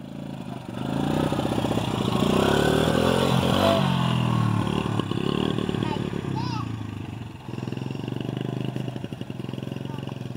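Small youth four-wheeler (ATV) engine revving up over the first couple of seconds, easing off around four to five seconds in, then running at steady part throttle as it drives off, with a short dip about seven and a half seconds in.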